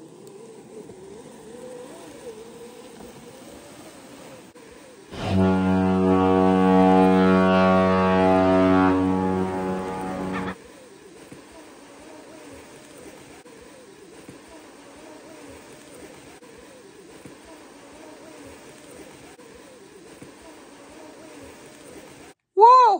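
A deep ship's horn blows once, steadily, for about five seconds over a faint wavering background, then cuts off.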